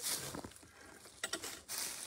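Handling noise as a performer shifts the camera and his acoustic guitar: a brief rustle at the start, then a few light clicks a little over a second in.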